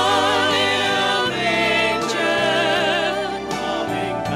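Small church praise team of mixed voices singing together into microphones, long held notes with vibrato and a change of note about a second in.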